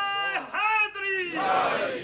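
A man's voice crying out in long, loud, drawn-out calls that rise and fall, one after another, with the congregation stirring around him.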